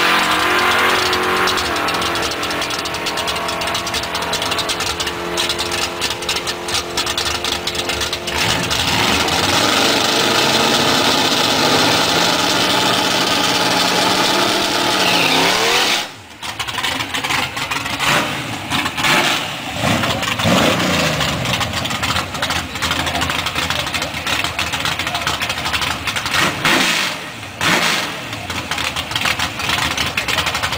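Pontiac Firebird Trans Am's V8 held at high revs through a burnout, the rear tyres spinning on the pavement; the revs climb just before the sound cuts off abruptly about halfway through. After that the engine is revved in short bursts, its pitch rising and falling several times.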